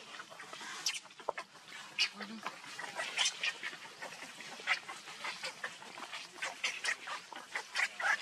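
Newborn macaque infant crying in short, high-pitched squeals, several a second and irregular.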